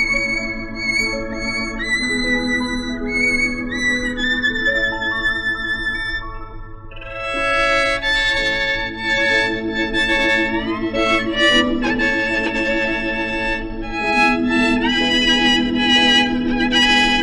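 Instrumental violin recording. A melody in long held notes runs over steady sustained chords, then about halfway through a bowed violin line comes in louder and fuller, with notes that slide up in pitch.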